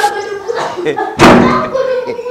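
A wooden door shut hard once, a single loud bang a little over a second in that rings out briefly.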